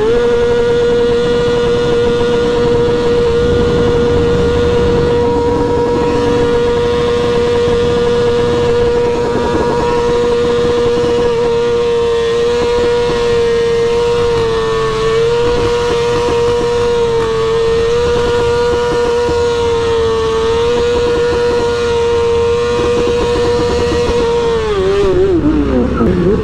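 Motorcycle engine held at high, steady revs through a long wheelie. The pitch rises sharply at the start, wavers slightly a few times in the middle, and drops away near the end as the throttle comes off and the front wheel comes down.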